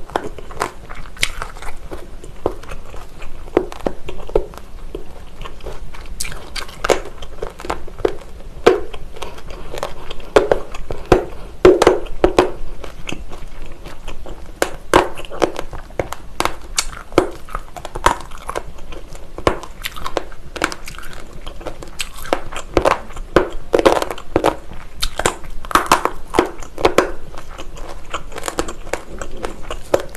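Close-miked chewing of a mouthful of gimbap: a steady run of irregular wet crunches and sharp clicks from the mouth, louder around the middle and again about two thirds of the way through.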